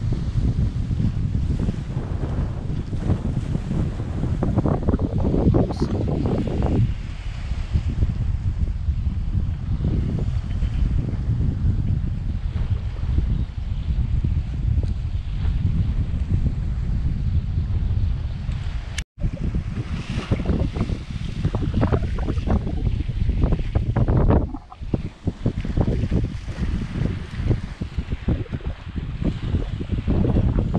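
Wind buffeting the microphone in gusts over small waves lapping and splashing against shoreline rocks. The sound cuts out for an instant about two-thirds of the way through.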